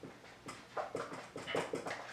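A marker squeaking in about seven short strokes on a whiteboard.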